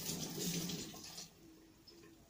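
Tap water running into a sink as beetroot is washed under it. The flow stops a little over a second in.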